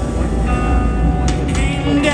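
Live rock band holding a sustained chord on heavily distorted electric guitars and bass, with a deep low end. A singing voice comes in at the very end.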